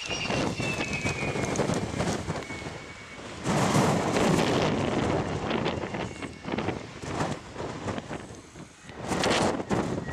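Wind buffeting the microphone in uneven gusts, loudest from about three and a half seconds in to about six seconds and again near the end.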